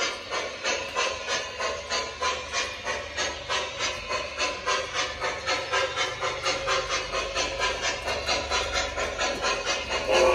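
Electronic steam chuffing from the Proto-Sound 3 sound system in an MTH Premier Empire State Express model steam locomotive running on O-gauge track. The chuffs are steady and rhythmic with a hiss to each one, and they slowly quicken from about two to about four a second. Under them is a low rumble of the train rolling.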